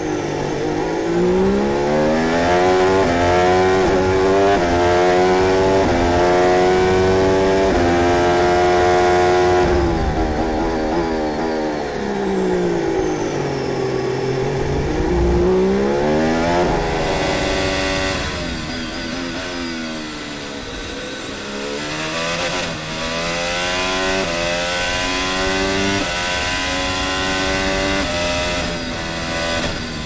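Onboard sound of a 2022 Williams Formula 1 car's Mercedes 1.6-litre V6 turbo-hybrid engine. It climbs through the gears in quick stepped upshifts, then drops in pitch through a run of downshifts under braking. This happens over and over, lap racing at full throttle between corners.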